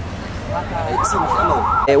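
Emergency vehicle siren wailing, its pitch sweeping rapidly up and down about three times a second, starting about halfway in over low crowd and street noise and breaking off just before the end.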